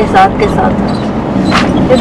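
Steady engine and road drone inside a moving bus, a low continuous rumble with a faint steady hum, under brief snatches of voices.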